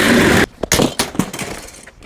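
Office chair casters rolling loudly over asphalt, cut off about half a second in, followed by a clatter of knocks and rattles as the chair crashes and breaks.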